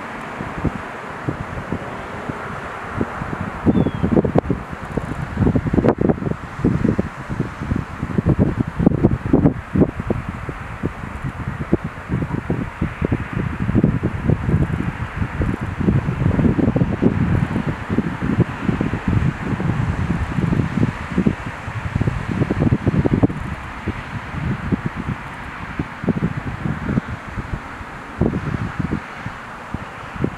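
Wind buffeting the microphone in irregular gusts, a low, uneven noise that comes and goes from about four seconds in, over a steady outdoor hiss.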